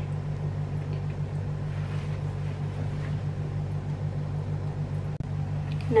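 A steady low hum with a faint hiss behind it, dropping out for an instant about five seconds in.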